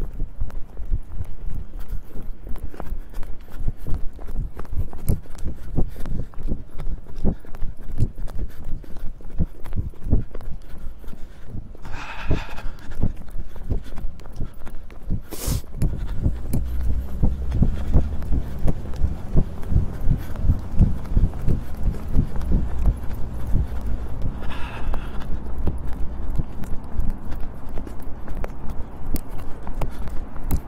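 Running footsteps on pavement, a quick steady beat of footfalls with the microphone jostled at each stride. A low rumble joins in about halfway through.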